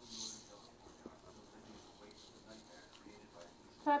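Soft, indistinct talking at the table, with a short hiss just after the start, then one louder spoken word near the end.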